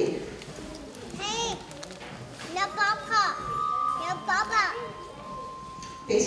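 Children in an audience calling out in short bursts of high voices, three times. A steady high tone comes in halfway through and holds under the last call.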